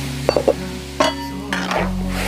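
A long metal ladle stirring and clinking against a large steel wok as bracken fern is blanched in boiling water, with a steady hiss from the water. There are a few sharp clinks, a cluster about a third of a second in and another at one second, over background music.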